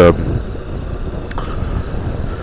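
Honda NC750X's parallel-twin engine running with wind on the microphone while riding, a steady low rumble.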